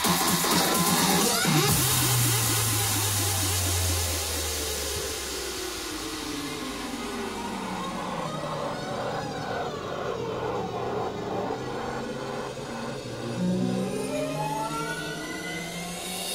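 DJ mix of electronic dance music run through a sweeping transition effect. The pitch and filter slide downward and the treble fades away, then the sweep climbs back up toward the end.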